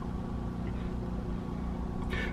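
A generator running steadily, heard from inside the boat as a low, even hum. It is supplying the boat's AC panel through the shore-power cord.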